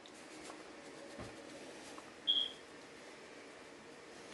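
A single short, high-pitched electronic beep a little over two seconds in, over faint steady background noise.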